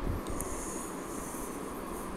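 Low background noise: an uneven rumble and hiss with a faint high-pitched whine.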